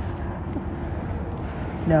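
Wind rumbling on the microphone outdoors, a steady low rumble with a faint hum through the first half.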